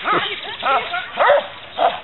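A dog barking in short, loud bursts, about four times in two seconds, during bite-sleeve work, mixed with a person's voice.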